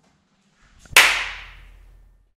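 A single sharp crack about a second in, fading out over about a second.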